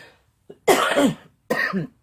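A woman coughing: two hard coughs a little under a second apart, the second shorter.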